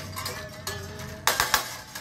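Tensioned autoharp strings being cut with tin snips: two sharp snaps a little past halfway, over a steady metallic ringing from the strings.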